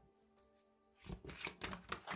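A tarot card deck being shuffled and handled by hand: a quick run of sharp card flicks and snaps starting about a second in, over soft background music.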